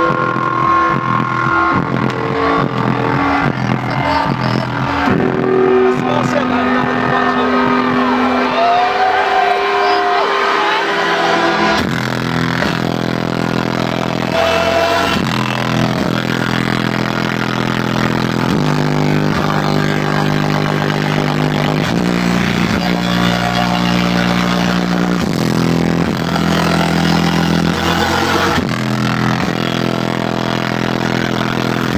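Loud dubstep DJ set over a club sound system, recorded on a phone whose microphone is overloaded by the heavy bass, so the music comes out distorted and buzzy. Held, gliding notes give way about twelve seconds in to a dense, distorted bass section.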